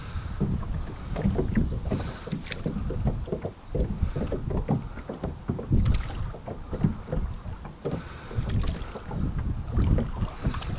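Oars of a small plastic rowing boat working through the water: irregular splashes and low knocks from the oars and hull, with wind rumbling on the microphone.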